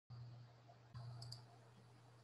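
Near silence: a faint steady low hum, with two quick soft clicks of a computer mouse a little past one second in.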